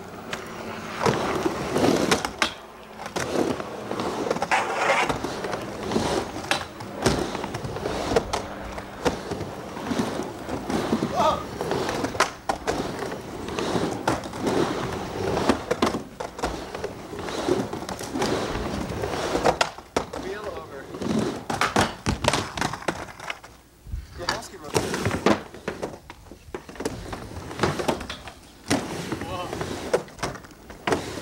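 Skateboards riding a backyard mini ramp: wheels rolling across the ramp surface, with repeated sharp clacks and knocks as trucks and boards hit the coping and the ramp.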